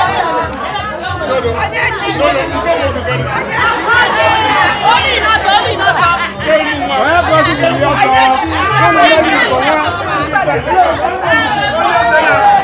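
A group of women singing and chattering loudly over one another, with music and a low repeating beat underneath.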